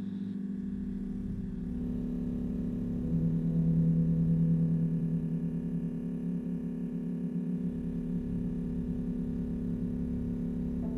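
Electro-acoustic ambient music: a layered drone of sustained low tones. A deeper tone swells in about three seconds in, is the loudest part for a couple of seconds, then eases back into the wavering drone.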